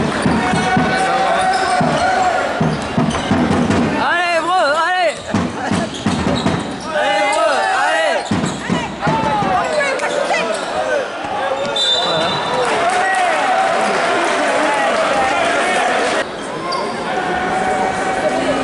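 Live basketball game in an indoor gym: the ball bouncing on the hardwood court and crowd voices throughout, with bursts of shoe squeaks about four and seven seconds in.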